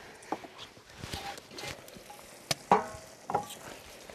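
Sparse light clinks and knocks of a metal pan lid and utensils at a pan of mushrooms cooking on a wood stove. The sharpest click comes about two and a half seconds in, followed by a brief squeaky scrape.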